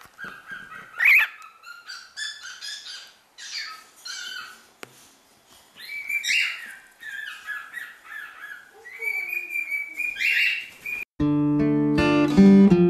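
Cockatiel chirping and whistling in short calls, one rising sharply in pitch and others held on a steady note. Acoustic guitar music starts suddenly near the end.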